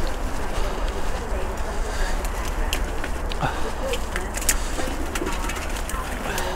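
Bicycle rolling slowly over a rough, overgrown grass path, with scattered light rattles and ticks over a steady low wind rumble on the microphone. A bird calls faintly a few times in the background.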